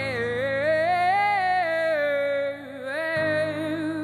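Live female singing: one long held note with vibrato that rises and falls back, then breaks off about two and a half seconds in. A new held note starts about three seconds in, over sustained low accompaniment chords that change at the same point.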